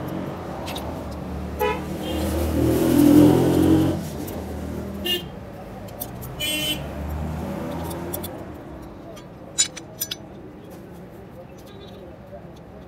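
Road traffic going by: a vehicle's engine passes, loudest about two to four seconds in, with several short horn toots. A couple of sharp clicks follow near the end.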